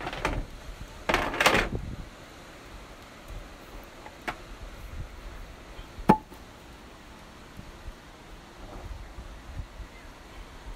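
Gear being rummaged and moved around in a pickup truck bed: a rattling, scraping burst about a second in, then a light click and one sharp knock with a short ring about six seconds in, over low wind rumble.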